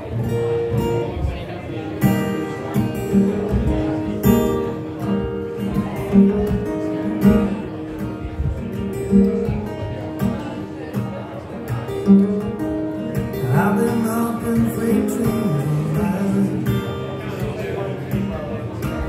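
Steel-string acoustic guitar played live as a song's instrumental intro: strummed chords with ringing, sustained notes in a steady rhythm.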